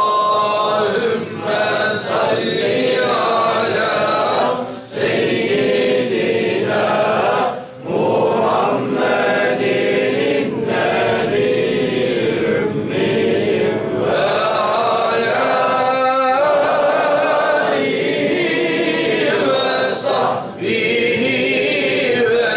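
A group of men chanting a salawat, the Islamic blessing on the Prophet, together in unison. It runs in long sung phrases with short breaks for breath.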